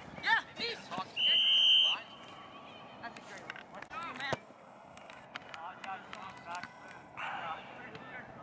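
Referee's whistle: one short, steady, high blast about a second in, stopping play, which a spectator had just called offside. Distant players' shouts around it.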